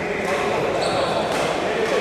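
Indistinct voices echoing in a large indoor hall, with a few sharp hits or knocks in between.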